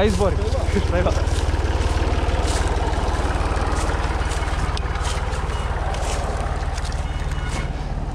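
Mountain bike riding along a forest trail: a steady low rumble of tyres and wind on the action-camera microphone, with frequent short clicks and rattles from the bike over the ground. A voice is heard briefly in the first second.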